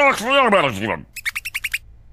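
A cartoon giant hamster's calls: two drawn-out squeals, each rising and then falling, followed by a quick run of about seven short high chirps.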